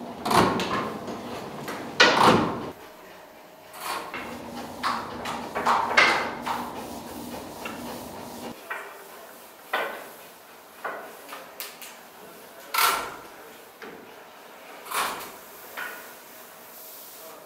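Dough sheeting machine rolling out pastry dough: irregular clunks and sliding swishes a few seconds apart, over a faint machine hum that drops away about halfway through.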